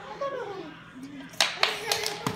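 A toddler's short vocal sound, then three sharp hand smacks in quick succession about a second and a half in.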